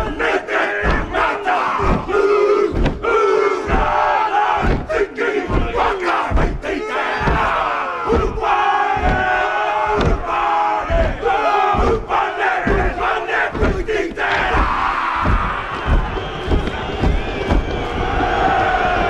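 A group of men performing a Māori haka: fierce shouted chanting in unison over a steady beat of stamping, about two stamps a second.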